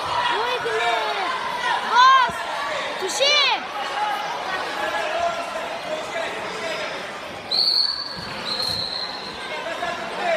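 Spectators and coaches shouting in a large echoing sports hall during a wrestling bout, with two loud yells about two and three seconds in. Near the end come two short, steady, high-pitched whistle tones, one after the other.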